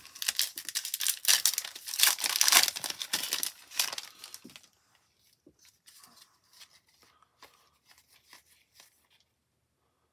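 A trading-card pack's plastic wrapper is torn open and crinkled, loudly, for the first four to five seconds. After that come faint light rustles and clicks as the stack of cards is slid out and handled.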